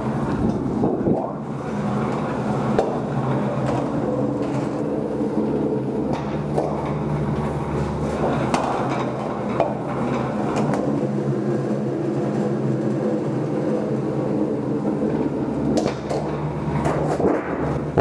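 Tin Knocker 24-gauge Pittsburgh lock former running, its motor and forming rollers giving a steady hum while a sheet-metal duct blank feeds through them to roll the Pittsburgh seam, with scattered rattles and knocks from the sheet.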